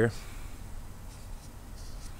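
Quiet outdoor background with a low steady hum and no clear event, just after the last of a spoken word at the very start.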